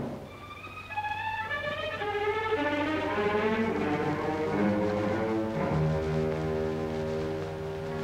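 Orchestral film score: strings play a phrase of notes stepping downward, then settle on a long held chord with lower notes added about halfway through.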